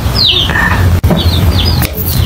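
Small birds chirping in short, falling chirps, several in a couple of seconds, over a steady low hum, with two sharp clicks, one about a second in and one near the end.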